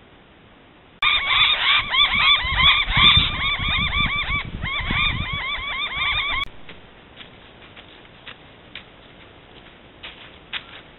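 A bird calling loudly in a fast run of repeated rising-and-falling notes, starting about a second in and cutting off abruptly after about five seconds, followed by faint ticks and rustles.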